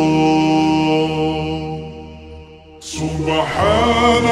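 A cappella nasheed vocals, slowed down and drenched in reverb: a long held sung note fades away over the first couple of seconds, then a new melismatic vocal phrase with wavering pitch comes in about three seconds in.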